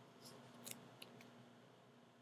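Near silence: room tone with a faint steady hum, broken by four faint short clicks in the first second and a half.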